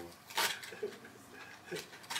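Wrapping paper being torn: one short, sharp rip about half a second in, then a few small crinkles, with faint voices in the room.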